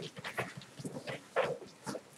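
Classroom rustle of paper: textbook pages being leafed through, in short irregular bursts.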